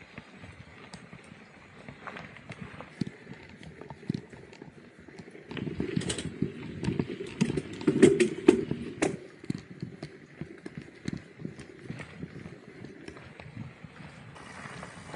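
Loaded bikepacking mountain bike rattling and knocking as it rides over a rough dirt trail. The clatter is irregular and grows densest and loudest from about six to nine seconds in.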